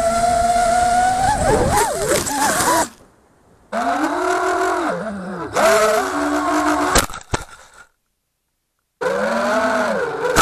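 FPV racing quadcopter's brushless motors and propellers whining, the pitch rising and falling with throttle. The sound cuts out abruptly twice. There are a couple of sharp knocks about seven seconds in.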